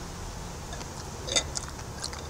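A person chewing a ripe fig, with a short wet mouth click or smack about one and a half seconds in and a few faint ticks after it, over a steady low background rumble.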